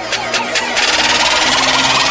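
Electronic intro sound effect: a low droning hum under a rising hiss, growing louder in the first second and then holding steady.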